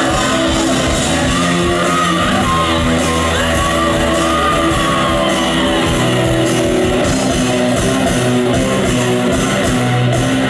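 Live rock band playing loud, electric guitars and bass guitar over a full band, heard from the audience.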